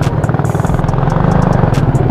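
Suzuki Raider 150's single-cylinder engine running unevenly in traffic with a fast, dense pulsing, hiccuping. The rider suspects a badly tuned carburettor.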